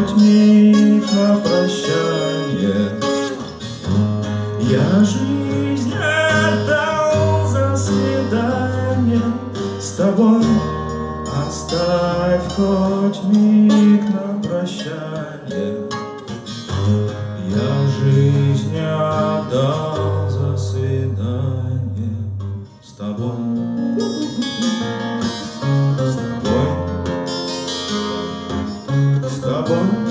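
A twelve-string acoustic guitar played live, picked and strummed through changing chords with moving bass notes, with a short drop in level about two-thirds of the way through.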